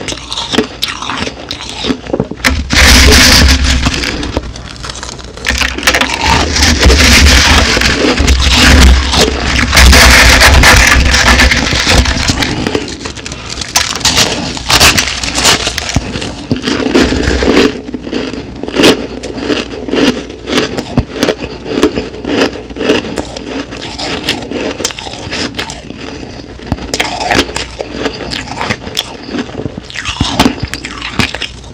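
Crushed ice crunching close to a microphone as it is handled by hand and chewed: a loud, dense crunching for the first ten seconds or so, then a long run of sharp, crackling crunches.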